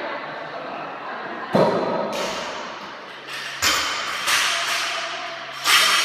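Heavy thuds on a rubber gym floor during a workout: four impacts, the first about a second and a half in and the last near the end, each followed by a short rattling ring.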